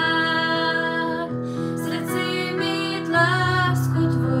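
Worship song: a woman singing with gentle instrumental accompaniment.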